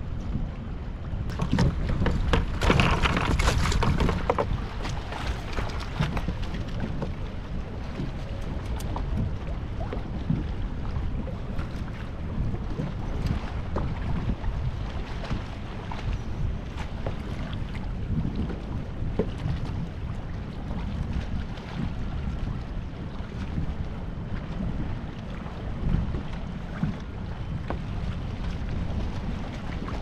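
Wind rushing over the microphone, with a louder stretch about two seconds in, and scattered small clicks and knocks from handling gear in the kayak.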